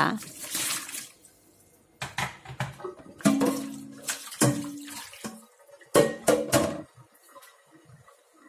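Hot water splashes briefly into a metal cooking pot in a stainless steel sink. The pot is then handled and rinsed: scattered knocks and clunks against the sink, a low steady tone for a couple of seconds midway, and a louder clunk about six seconds in.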